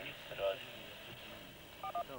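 A voice coming over a handheld two-way radio, thin and hard to make out, over a steady high-pitched whine from the transmission; the transmission cuts off near the end.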